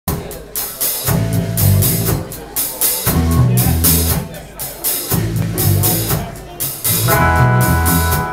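Live rock band playing an instrumental intro: a drum kit beat under an electric bass riff that repeats about every two seconds, with electric guitar chords coming in near the end.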